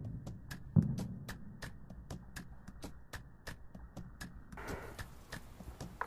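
A toy dart blaster fires once about a second in, a short dull thump from its spring plunger. A faint, regular ticking, about three clicks a second, sits under it.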